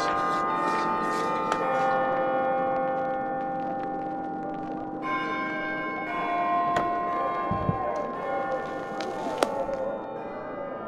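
Church bells ringing, their long overlapping tones slowly dying away, with a fresh peal struck about halfway through. A few short sharp clicks sound near the end.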